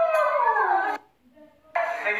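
A person's voice in a long howl-like wail that slides steadily down in pitch and cuts off abruptly about halfway through.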